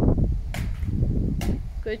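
Children's quad roller skate wheels rolling over a rough concrete driveway: a low rumble, with two sharp clicks about a second apart.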